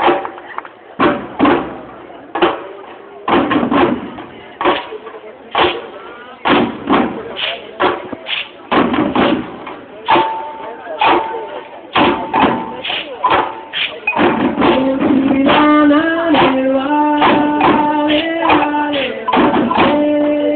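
An all-women percussion group's drums being struck in a loose, driving rhythm. About two-thirds of the way in, women's voices join in singing over the drumming, and the sound grows louder.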